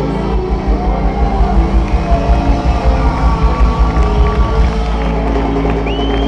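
Ska band playing live in a concert hall, heard from within the audience: heavy bass under guitars, keyboards and drums, with a steady beat.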